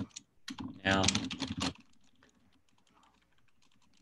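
Faint typing on a computer keyboard: a quick, irregular run of key clicks through the second half.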